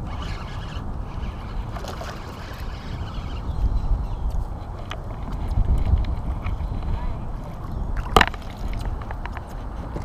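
Water lapping and sloshing against a small fishing boat's hull under a steady low rumble, while a largemouth bass is reeled in and lifted to the boat. A single sharp knock comes about eight seconds in.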